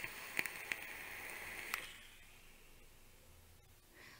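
Air drawn through a USV RDA's airflow slots during an inhale on a squonk mod, with the airflow closed down to only the middle section. It is a faint, smooth hiss with a few small clicks, and it stops about two seconds in.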